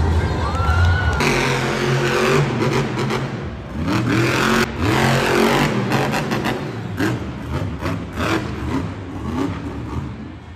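Monster truck engines revving hard, the pitch climbing and dropping again and again. The sound changes abruptly about a second in.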